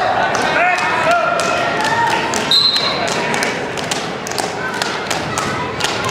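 Shouting voices of spectators and coaches at a wrestling match, with frequent sharp knocks and thumps throughout and a brief high squeak about two and a half seconds in.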